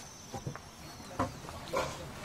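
Quiet indoor ambience of people moving about a wooden shed: a few faint knocks and handling noises, and a brief low voice near the end, over a faint steady high-pitched whine.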